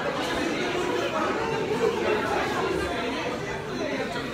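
Speech: a woman talking over the chatter of other voices.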